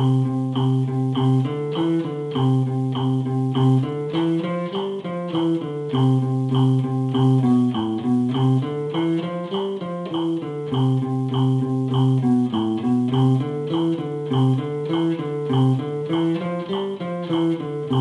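Archtop guitar playing a single-note eighth-note reading exercise, each note picked with alternate up and down strokes in an even, steady rhythm.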